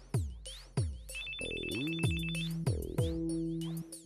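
Electronic music with deep, regularly spaced drum hits, and a telephone ringing over it once, a fast trilling ring of about a second and a half starting a little after a second in.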